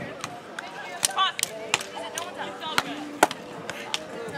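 Beach volleyballs being struck by hands and forearms during rallies: a scattered series of sharp slaps, the loudest about three seconds in, over distant voices of players and onlookers.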